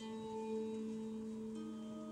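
Harp notes plucked and left to ring: a low note sounds at the start and sustains, with a further soft note joining about a second and a half in.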